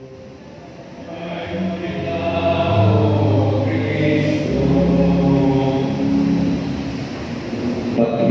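Choir singing in a church: held notes that swell in after a brief lull at the start. A deep rumble runs underneath from about halfway through.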